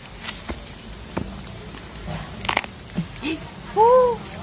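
A cassava stem being wrenched back and forth in the soil, giving a few scattered sharp cracks and knocks, the loudest about two and a half seconds in. Just before the end comes a short vocal sound that rises and falls in pitch.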